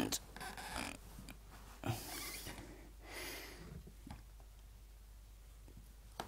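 A few faint, noisy breaths or sniffs, each about half a second long, from a man with a cold and a sore throat.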